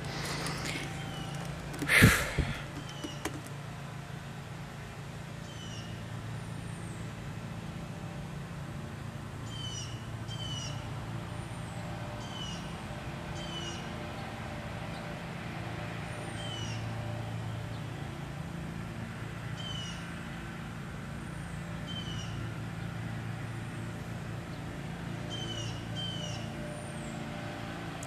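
Short high chirps from a bird, repeating every second or two over a steady low hum.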